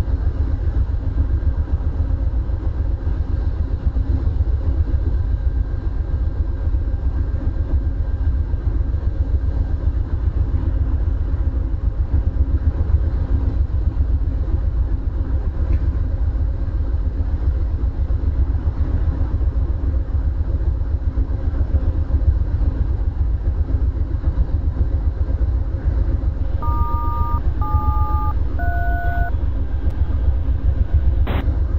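Steady low rumble of a stationary Amtrak Superliner train at the platform, unchanging throughout. Near the end, three short two-tone touch-tone (DTMF) beeps sound about a second apart.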